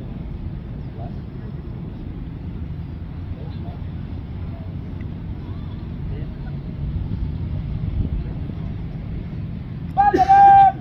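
Outdoor ambience: a steady low rumble, most likely wind on the microphone, with faint distant voices.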